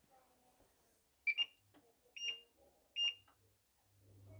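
Three short electronic beeps from a glass-top hob's touch controls, a little under a second apart, as the hob is switched on or its power is set.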